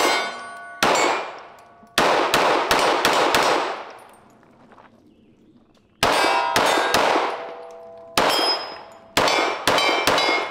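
Canik TTI Combat 9mm pistol firing a series of shots at steel targets, each hit ringing with a clear metallic ding. There is a quick run of shots, a pause of about two seconds, then another run of shots.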